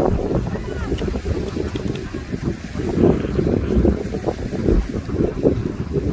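Wind buffeting the microphone: a low, uneven noise rising and falling in gusts. A distant voice calls out briefly near the start.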